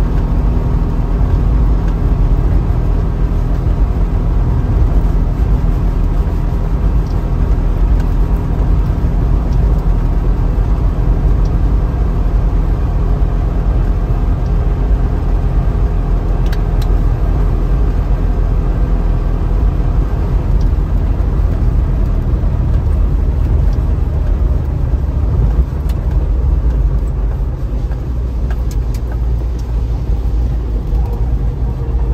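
Trabant 601's two-cylinder two-stroke engine running steadily at cruising speed, heard from inside the cabin over tyre noise on the wet road. It gets a little quieter near the end.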